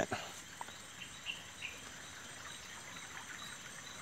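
Faint, steady high-pitched insect chorus of tropical forest, with a few short high chirps about a second and a half in.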